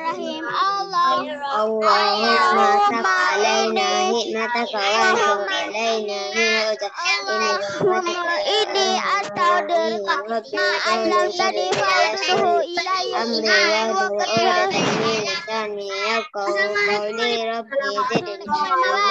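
Children's voices reciting an Arabic after-lesson prayer (doa) together in a continuous sing-song chant, heard through a video call's audio.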